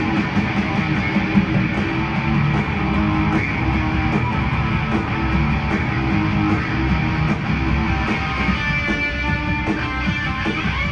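Live rock band playing loud: electric guitar over drums, heard from high in the seats of a large arena. Near the end, held notes stand out over the band.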